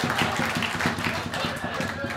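Comedy-club audience applauding and clapping, with crowd voices underneath, the applause slowly dying down.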